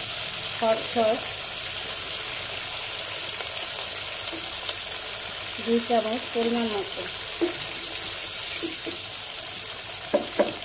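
Red tomato sauce with peppers and onion sizzling steadily in a frying pan, stirred with a wooden spatula.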